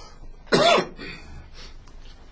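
A single short, loud cough about half a second in.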